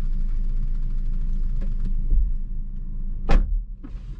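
Steady low rumble of a car idling, heard inside the cabin, then about three seconds in a car door shuts with a single loud thud, and the cabin goes quieter.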